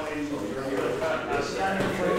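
A man speaking indistinctly, with no other sound standing out.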